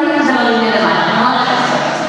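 A person's voice, loud and steady.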